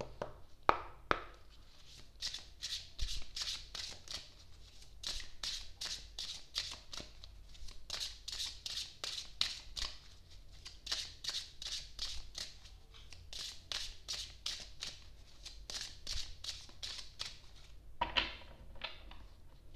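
A deck of cards being shuffled by hand, the cards slipping against each other in a long, even run of short strokes, about three a second.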